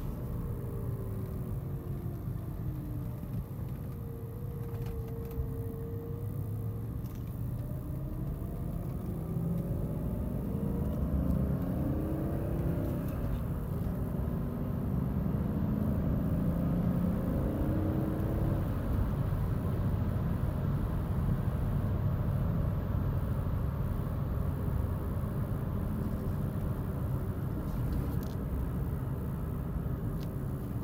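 Interior sound of a BMW E39 540i's 4.4-litre V8 while driving, mixed with road noise. The engine note dips early on, then climbs over several seconds as the car accelerates, then settles into a steady cruise.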